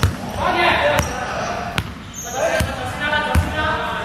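A basketball bouncing on a hardwood court as a player dribbles, about once a second, each bounce echoing in a large sports hall.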